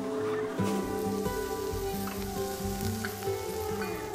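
Sardines sizzling on a charcoal grill, a fine crackling hiss that comes up about half a second in, under background music.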